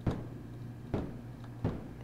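Short bursts of analog white noise from a Behringer Neutron synthesizer, played through its filter set low, so each burst is a dull, percussive hiss that dies away quickly; a few bursts, the first right at the start.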